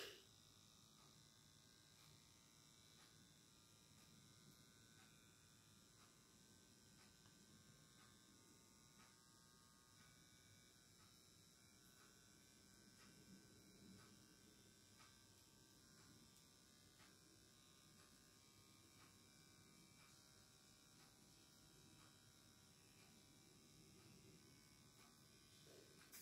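Near silence with a faint steady buzz from a wrist blood pressure monitor working on its cuff while it takes a reading.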